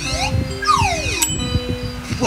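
Cartoon sound effects over light background music: a short rising chirp at the start, then a falling whistle-like glide about half a second in, over steady music tones.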